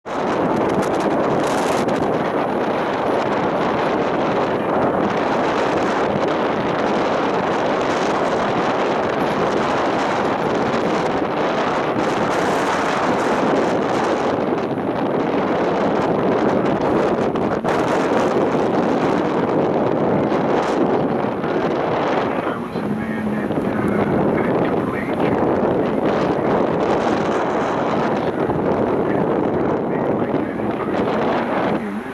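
Steady wind noise buffeting the microphone aboard a moving ferry, over the boat's rushing engine and water noise.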